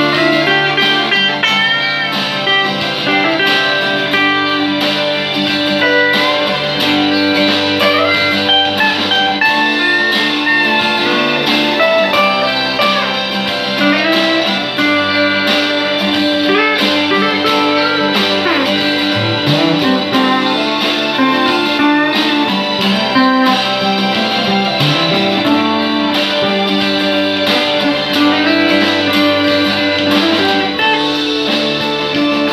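Electric guitar playing a slow, bluesy single-note melody with bent notes, over a steady sustained accompaniment whose chords change every few seconds.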